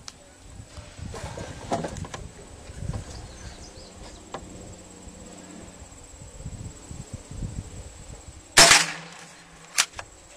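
Scattered handling knocks and rustles, then a single sharp shot from a Remington Mohawk 10C (Nylon 77 family) .22 rimfire semi-automatic rifle about eight and a half seconds in, ringing briefly. A smaller click follows about a second later.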